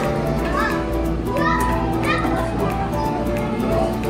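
Children's voices, a few short high calls and chatter, over steady background music.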